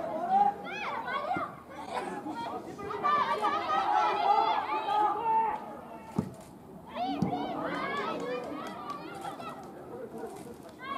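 Women footballers shouting and calling to each other across the pitch during open play, the voices high and overlapping. A single thud about six seconds in.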